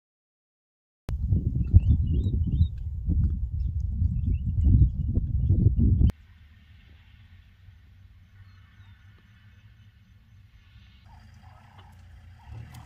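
Wind buffeting the microphone in loud, uneven low gusts for about five seconds, with a few faint bird chirps above it. It cuts off suddenly to a quiet, steady low rumble.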